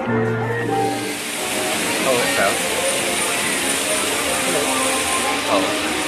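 Music for about the first second, then a steady rushing hiss of water jets spraying from the hub of a flying-elephant ride, with a few short voice sounds over it.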